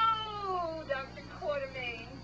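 High, drawn-out wailing calls, each falling in pitch. The longest comes right at the start and shorter ones follow.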